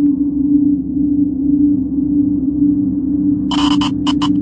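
A steady low drone from the soundtrack's atmospheric intro, held evenly with a second lower tone beneath it. Near the end, a quick run of four or five short hissing crackles sits over the drone.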